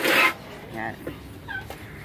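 Small pet dog whimpering in short high-pitched whines about a second in and again a little later, worked up and wanting attention. A loud rustle sits right at the start.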